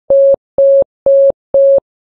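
Morse code letter H sent as four short dits: four identical beeps of one steady mid-pitched tone, evenly spaced at about two a second.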